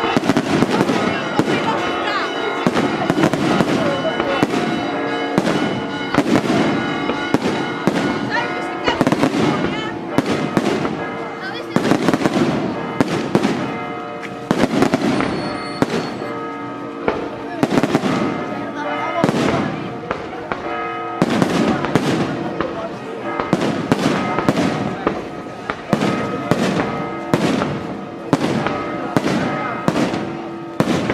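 Aerial firework shells bursting in quick, continuous succession, several reports a second with heavier bangs about every second, under the crackle of the stars.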